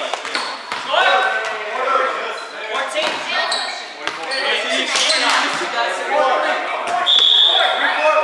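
Players' voices calling out in a reverberant gymnasium during a volleyball game, with repeated sharp impacts of the ball being hit and bouncing on the hardwood floor. A short high squeak comes near the end.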